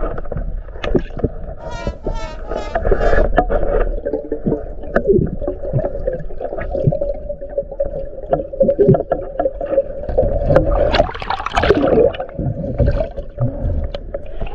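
Underwater sound recorded through a camera housing during a dive: muffled water noise with a steady low hum and scattered clicks and knocks. A louder rush of moving water comes about eleven seconds in as the camera rises toward the surface.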